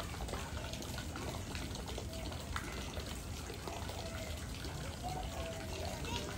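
Water running and trickling steadily, with faint voices in the background.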